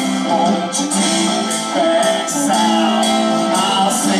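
Live rock band playing: a drum kit with cymbal hits over guitars and voices.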